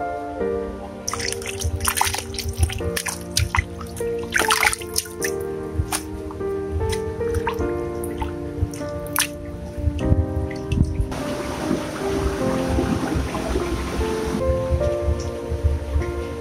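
Background music throughout, over water splashing and dripping as leaves are washed by hand in a basin of water. Past the middle comes a few seconds of steady rushing water.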